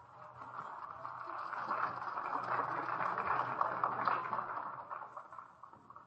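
Concert audience applauding at the end of an orchestral piece, building for a couple of seconds and then dying away. It is heard on an old radio broadcast recording with a low steady hum underneath.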